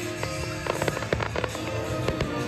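Aerial fireworks going off in a quick series of sharp bangs and crackles, a cluster a little past the middle and another near the end, over music playing along with the show.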